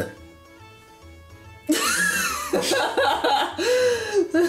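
Soft background music for the first couple of seconds, then people suddenly laughing and calling out loudly.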